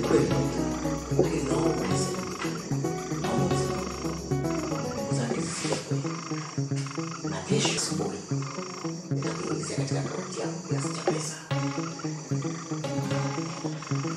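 Film background score: synthesizer notes stepping in a quick repeating melodic pattern, with regular percussive ticks.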